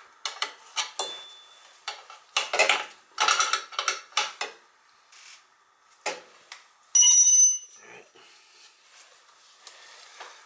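Metal tools and sheet-metal parts of a Beckett oil burner clinking and scraping as its top screws are undone and the igniter is swung open, with the burner shut down. About seven seconds in, a short bell-like metallic ring stands out above the clinking.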